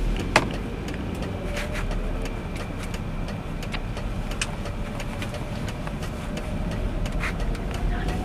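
A taxi's engine and road noise heard from inside the cabin as it drives slowly, with scattered sharp clicks, the loudest about half a second in.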